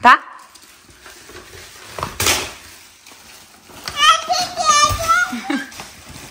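A toddler's high-pitched babbling, with no clear words, from about four seconds in, after a brief rustle about two seconds in.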